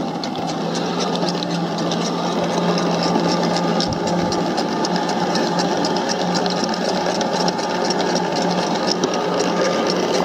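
Hayward TigerShark robotic pool cleaner running at the waterline: a steady motor and pump hum with water churning and crackling around it. It grows louder over the first second.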